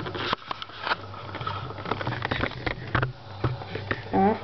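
Handling noise from a camera being picked up and moved by hand: rubbing and rustling against the microphone with a run of irregular small clicks and knocks.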